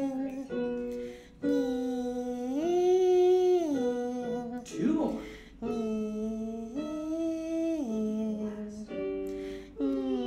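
A voice humming a vocal warm-up on a 1-5-1 pattern: a held low note, a step up a fifth to a held higher note, then back down. The figure is heard twice.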